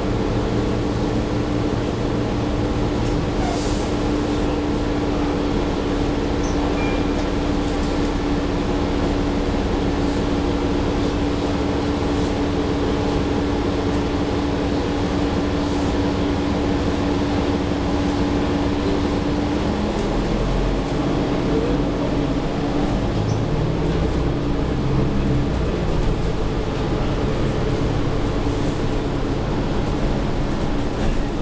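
Interior drone of a New Flyer XDE40 diesel-electric hybrid bus (Cummins L9 engine, Allison EP40 hybrid drive): a steady hum with a held tone while the bus stands. About two-thirds of the way in, the drivetrain note changes and rises briefly as the bus pulls away.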